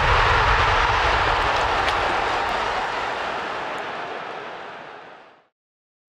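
Airy rushing noise of an intro sound effect under the logo card, loudest at the start and fading out slowly to silence over about five seconds.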